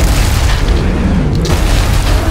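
Loud, deep cinematic boom and rumble from trailer sound design, holding steady with heavy bass.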